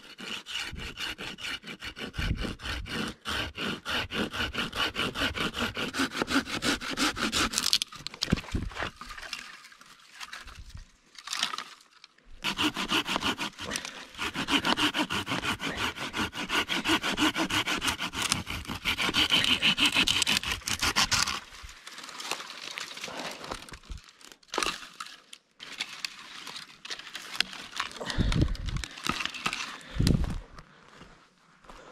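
Hand saw cutting through a dry branch in two long runs of quick, even strokes with a pause between, the blade ringing on each stroke.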